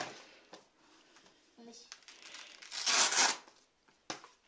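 The hook-and-loop (Velcro) wrist strap of a boxing glove being pulled open: one short ripping rasp about three seconds in, after fainter handling noises.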